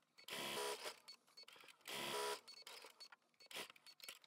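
Sewing machine running in two short bursts of about half a second each, stitching a seam through pieced quilt-block fabric.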